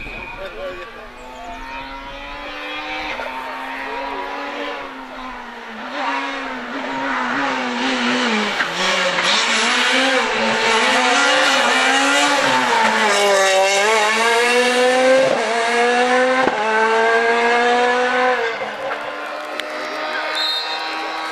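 Ford Fiesta S2000 rally car's 2.0-litre naturally aspirated four-cylinder engine revving hard as the car approaches and passes. Its pitch climbs and drops again and again with gear changes and lifts, and the sound grows louder to a peak as the car goes by.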